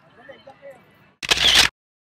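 A camera shutter sound effect: one short, loud click-burst about a second and a quarter in, cutting off abruptly.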